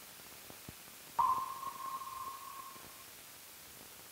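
A single sonar-style ping, one clear tone that starts sharply about a second in and fades away over about two seconds. Under it are faint hiss and a few soft clicks.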